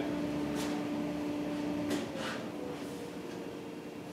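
A steady electric-motor hum that is switched off about halfway through and winds down, falling in pitch over the next second, with a few faint clicks.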